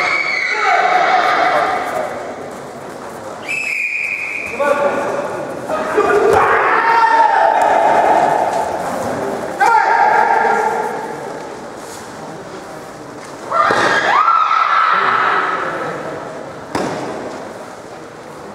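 Loud shouts during a karate kumite bout, fighters' kiai and yells around the mat, about seven of them, each starting sharply and ringing on in a large hall. Thuds of strikes and feet on the mats come in between.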